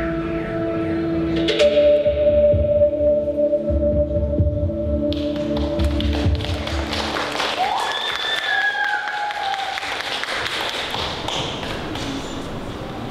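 Instrumental music with low beats ends about five seconds in. Audience applause and cheering follow, with a drawn-out call from the crowd a few seconds later.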